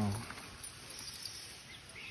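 Faint outdoor ambience, with a few short, high chirps near the end.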